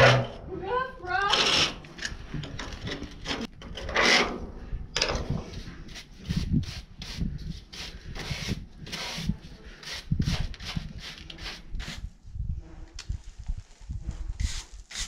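Hand tool scraping and picking grit out of a seam in the steel trommel drum, in short, irregular strokes.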